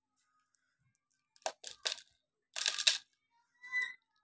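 Handling noise: after a quiet start, a few short rattles and rubs about a second and a half in, as beads and the foil-wrapped mirror prism are handled close to the microphone.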